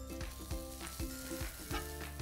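Butter sizzling as it melts in a hot nonstick frying pan, pushed around with a table knife; a steady light hiss with faint soft knocks.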